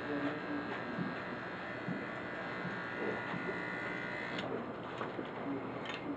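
Corded electric hair clippers buzzing steadily as they cut the short side hair of a mannequin head, with the high part of the buzz dropping away a little over four seconds in.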